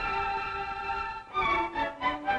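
Orchestra playing dance music for a stage number, led by violins. The strings hold a chord, then move into quicker notes about a second and a half in.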